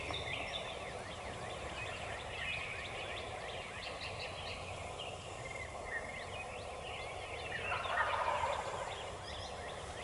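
A wild turkey gobbler gobbling once about eight seconds in, a short rattling call that is the loudest sound here, over many faint, high, quick chirps.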